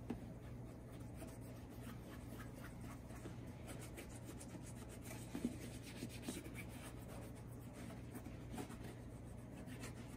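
A cloth wrapped around the fingers rubbing in repeated faint strokes over the leather of a Red Wing Iron Ranger 8111 boot, with a steady low hum beneath.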